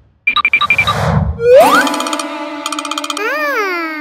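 Comedic background music cue with cartoon-style sound effects: a quick run of short notes, then a rising glide about a second and a half in, and held notes with a rise-and-fall glide near the end.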